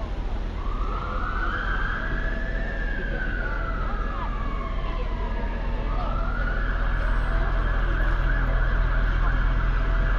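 Emergency vehicle siren: one slow wail rising and then falling over about five seconds, then switching to a fast warbling yelp that grows louder toward the end. A steady low traffic rumble runs underneath.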